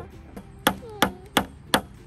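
Small claw hammer striking a wooden toy-car kit four times in quick, even succession, about three blows a second, driving in the nails that hold the wheels on.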